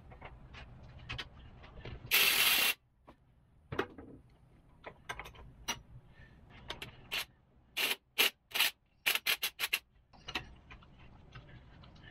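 A Kobalt cordless driver runs in one short burst about two seconds in, working the 14 mm bolt on a motorcycle's steel engine bracket. Scattered metal clicks follow, then a quick run of sharp metallic clanks as the bracket is worked loose by hand.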